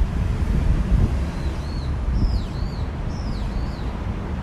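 Wind buffeting a phone's microphone as a steady low rumble. A songbird calls over it in the second half: several short, high, arched chirps in quick pairs.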